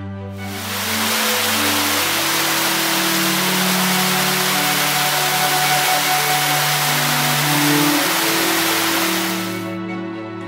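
Rushing water of a steep mountain stream cascading over rocks, a loud steady rush that fades in just after the start and fades out near the end. Background music continues underneath.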